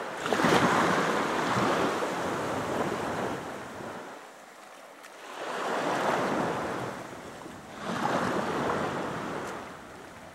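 Small waves washing in at the shoreline of shallow water, in three swells of hissing wash with quieter lulls between them.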